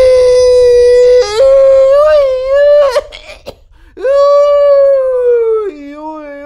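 A man's loud, high, drawn-out yells of joy: one long held cry, a pause for breath about three seconds in, then a second long cry that drops lower in pitch near the end.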